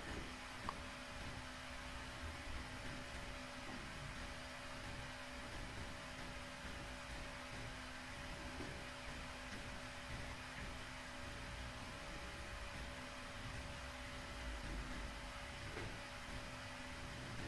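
Faint steady background hiss with a low electrical hum: the room tone of a recording microphone, with one tiny click about a second in.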